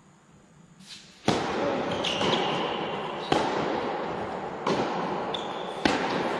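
Tennis rally: a loud racket strike on the ball about a second in, then further strikes about every second and a half. Shoes squeak briefly on the court between the shots.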